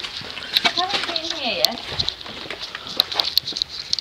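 Indistinct voices of people nearby, with scattered light clicks and short high ticks.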